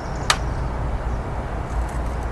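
A single sharp click about a third of a second in, from sandpaper being fitted to a DeWalt palm sander that is switched off, over a steady low background rumble.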